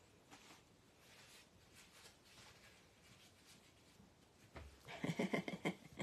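Faint rustling and light handling of rubber-stamping supplies, then near the end a thump and a woman's short laugh.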